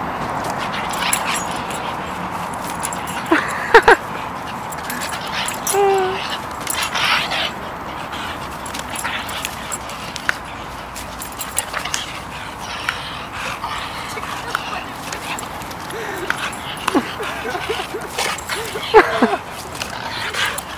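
Two American Staffordshire terriers giving scattered short barks and yips as they play, leaping after a balloon; the loudest calls come about three and a half seconds in and again near the end.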